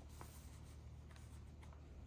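Near silence: a faint steady low hum with a few soft ticks and rustles from a sheet of paper held in the hands.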